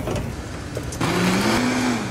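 Countertop blender switched on about a second in, its motor rising in pitch as it spins up to speed, with a loud whirring rush.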